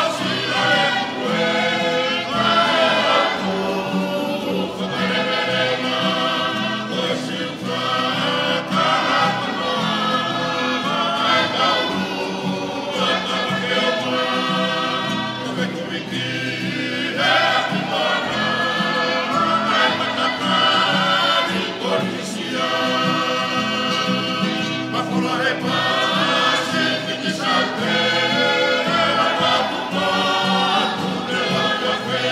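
A choir singing in several-part harmony, holding long chords in phrases a few seconds long.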